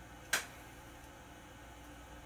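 One sharp click about a third of a second in, over a faint steady room hum.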